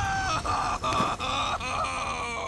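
A man's long anguished wail, one drawn-out cry of despair that steps down in pitch, from a cartoon character grieving over something destroyed.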